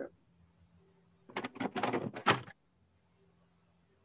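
A brief clatter of several knocks, lasting about a second, from a radio-play sound effect of a telephone being carried into another room.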